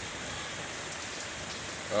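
Steady rain falling, an even hiss of downpour.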